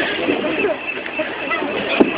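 Outdoor crowd background: a steady murmur of faint, indistinct voices with no clear words.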